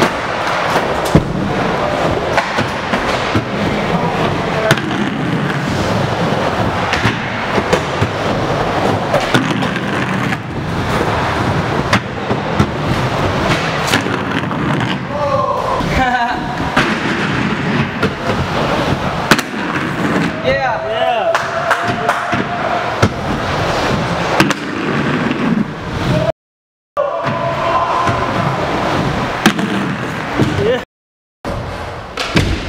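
Inline skate wheels rolling and grinding on a wooden mini ramp, with frequent sharp clacks from landings and coping hits, in an echoing hall alongside voices. The sound cuts out for a moment near the end.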